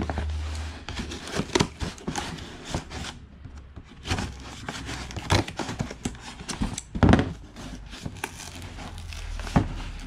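A cardboard shipping box being cut open with scissors and its flaps torn and pulled apart by hand: irregular cardboard tearing, crinkling and scraping, with a short lull about three seconds in.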